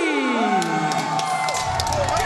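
Arena crowd cheering and whooping. Under it a long held sound on the arena loudspeakers glides down in pitch over the first second and a half.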